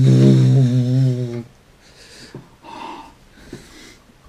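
A man's long wordless cry of pain, held for about a second and a half with a wavering pitch, then two short breathy exhales. This is his reaction to the burn of naga morich chili powder in his mouth, a pain that keeps returning after milk.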